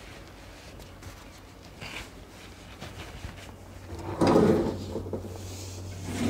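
Kitchen oven door opened and a baking dish taken out: small clicks and knocks, then a louder scrape of metal about four seconds in.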